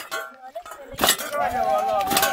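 Metal clinks about once a second, from farm hoes and shovels struck in rhythm, with voices; from about one and a half seconds in, a high voice holds a long, slightly wavering note.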